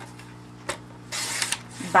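Cardstock being slid and lined up on a paper trimmer: a light click, then a short papery scrape about a second in.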